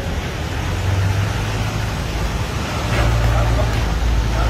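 City street traffic: a steady low engine rumble from passing vehicles, swelling about a second in and again near the end.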